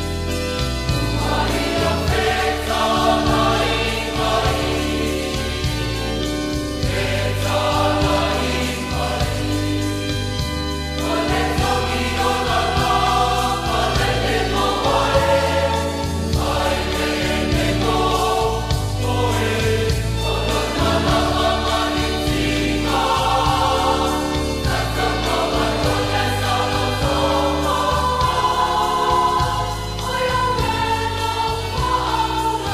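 Choir singing a hymn over instrumental accompaniment with a steady bass line.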